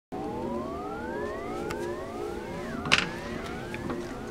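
Several overlapping tones, each rising steadily in pitch for about a second and a half and starting one after another, with a sharp knock about three seconds in.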